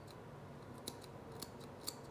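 Hair scissors snipping through a lock of bangs: a few faint, crisp snips, two close together about a second in and another near the end.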